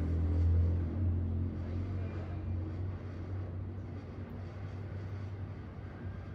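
Low rumble of road traffic passing outside, loudest at the start and fading away over the first three seconds, leaving a faint steady background hiss.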